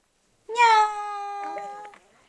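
A baby's long, high-pitched vocalisation starting about half a second in: one note held level for over a second, then cut off near the end.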